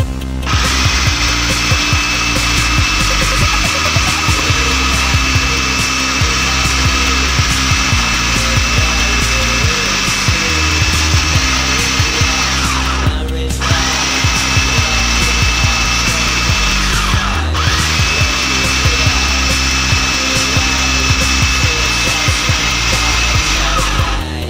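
Anex electric food processor motor running as it grinds a thick paste. It cuts out briefly about halfway through and again a few seconds later, then starts up again each time. Background music with a stepped bass line plays throughout.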